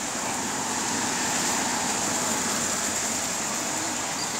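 Steady road traffic noise from passing cars on a busy city street, an even rush with no distinct events.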